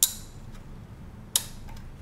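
Two sharp clicks about a second and a half apart: thin carbon-fibre frame plates tapping against each other and the tabletop as they are handled.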